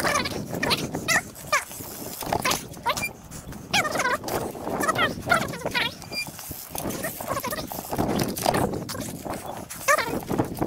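A dog barking repeatedly, many short calls in quick succession, mixed with sharp knocks of a trials bike's tyres landing on asphalt.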